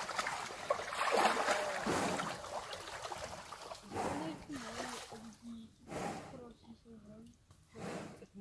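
White rhinos sloshing and splashing in a mud wallow, with quiet human voices talking in the second half.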